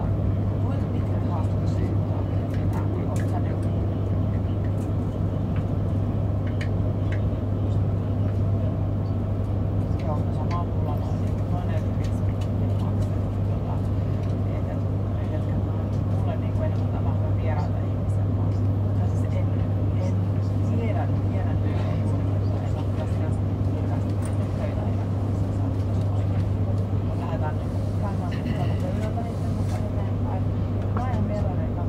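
Cabin noise inside a moving passenger train: a steady low hum over a constant rumble of running gear, with indistinct voices faintly in the background.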